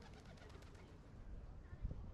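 A bird, faint: a quick run of soft fluttering ticks over about the first second. A low thump near the end.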